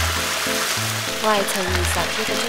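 Mantis shrimp frying in a wok of hot oil, a steady sizzle, under background music with a bass note repeating about once a second and a brief sung line.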